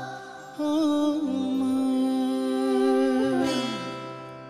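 A male singer holds one long, wavering note that slides down as it ends, over soft instrumental backing.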